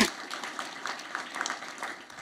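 Audience applause in a large room, thinning out and dying away.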